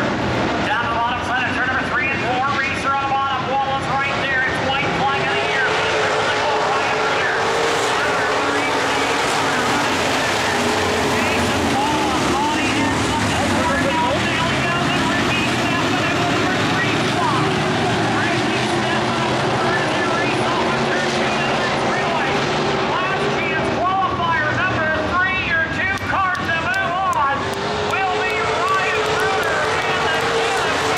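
A pack of dirt-track modified race cars running at speed, their V8 engines droning together, the pitch sagging and then climbing again as the cars lap the oval.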